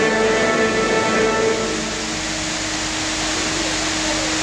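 Show music ending on a held chord that fades out about a second and a half in, leaving the steady hiss of fountain water jets spraying.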